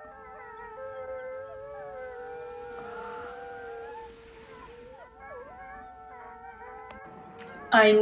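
A chorus of wolves howling: several long, overlapping howls at different pitches, sliding up and down.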